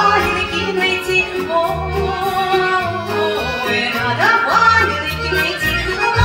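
Live Russian folk song: a female voice singing over accordions, electric bass and drums, with a steady bass line and the voice sliding upward about four seconds in.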